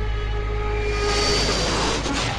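A jet-like rushing roar that swells about a second in, over a few steady held tones.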